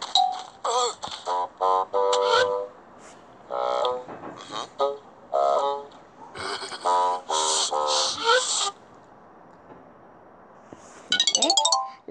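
Short musical sound effects from a children's Bible story app in a run of brief bursts, then a pause, and about a second before the end a quick bright chime run marking a 'Bible gem' reward being found.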